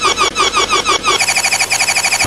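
A short snippet of a cartoon voice's yell, looped over and over in a stutter edit. It repeats about eight times a second, then about halfway through it speeds up and goes higher until it runs together into a rapid buzz.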